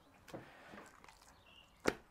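Faint handling sounds, then a single sharp knock on the wooden butcher's board shortly before the end.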